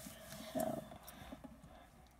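Mostly quiet room with a short, faint hum of a child's voice about half a second in.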